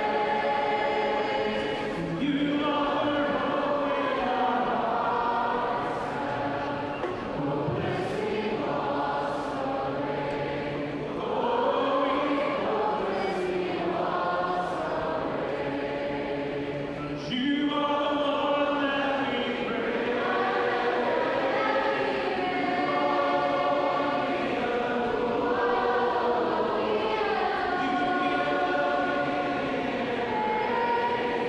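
A large crowd of voices singing a worship song together from the balconies of a tall, multi-storey atrium, in long held phrases with short breaks between them.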